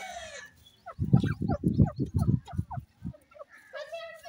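Grey francolins calling: a short call with an arching pitch at the start and again near the end. In between, about a second in, comes a rapid run of low, loud clucking pulses, roughly five or six a second, lasting about two seconds.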